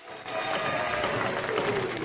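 Large crowd applauding and cheering: dense, steady clapping with a few raised voices over it.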